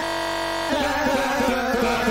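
Breakcore electronic track: a steady held chord for under a second, then the beat cuts back in under wavering, warbling tones.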